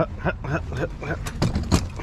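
Metal frame and wheels of a loaded folding wagon knocking and clattering in quick succession as it is lifted into an SUV's cargo area, the sharpest knock near the end. Short bits of voice come in among the knocks.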